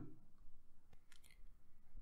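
Quiet room tone with a few faint mouth clicks, most of them about a second in.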